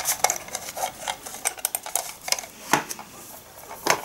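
A small plastic wired computer mouse and its cable being handled: irregular light clicks and knocks, with two louder knocks, one past the middle and one near the end.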